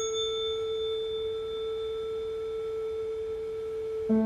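A single musical note sustained in a live chamber-ensemble performance: one long, steady, pure tone that was struck just before. Its fainter upper ringing fades away while the main tone holds.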